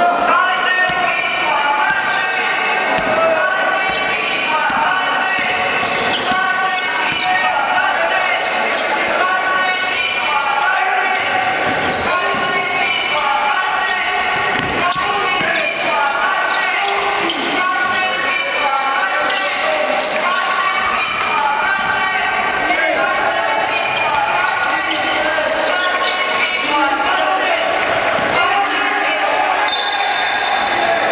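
Basketball being dribbled and bounced on a hardwood court during live play in a large indoor hall, under players' shouts and crowd voices.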